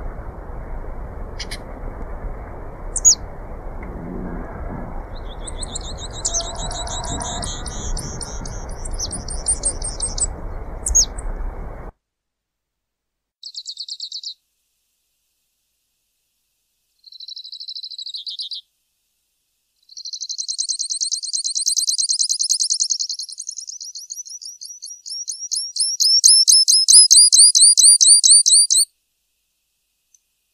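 Grassland yellow finch singing: high, fast, buzzy trills with a few sharp single notes, over low steady background noise that stops abruptly about twelve seconds in. Then come several separate trill phrases on a silent background, the last and loudest running about nine seconds.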